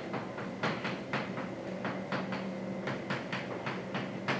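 Chalk writing on a blackboard: a quick, irregular run of short taps and scraping strokes as symbols are chalked in.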